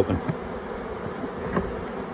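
Honeybees buzzing steadily around an open hive.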